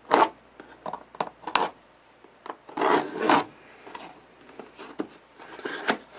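A cardboard retail box for a sustain pedal being opened: a few short knocks and scrapes, then a longer rubbing scrape about three seconds in as cardboard slides against cardboard.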